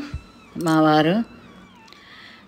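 A woman's voice holding one drawn-out syllable at a steady pitch for under a second, about half a second in; the rest is faint background.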